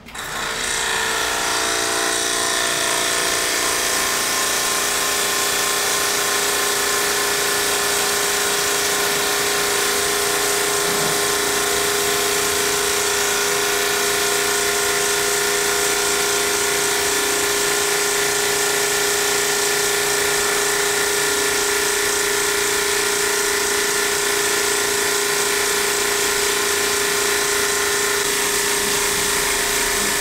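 Portable high-pressure washer switched on and running steadily, a constant motor hum over the hiss of the water jet from the spray lance.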